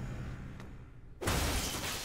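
Cartoon crash sound effect: after a fading low rumble, a sudden loud crash of something heavy falling and breaking comes just past halfway.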